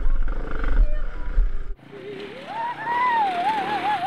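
Low wind-and-engine rumble from a moving dirt bike that cuts off suddenly a little before halfway. Then a man lets out one long howling whoop that rises, holds and warbles up and down near the end: his verdict on the first day's riding.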